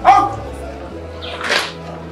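A sharp, short shouted drill command, its pitch dropping, right at the start, followed about a second and a half in by a brief noisy scuff.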